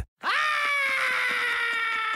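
A single voice giving a long, high-pitched cry of "ah!", starting just after a brief silence and held for nearly two seconds as its pitch slowly slides down.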